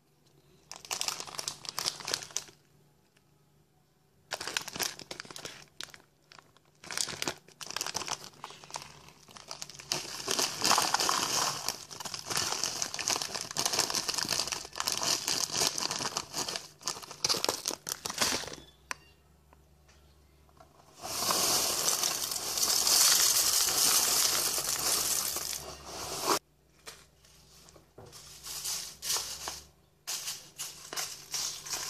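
Dry granola-cluster cereal and its plastic container handled close to the microphone: irregular bursts of crinkling and rattling, with a steadier rush lasting several seconds about two-thirds of the way in.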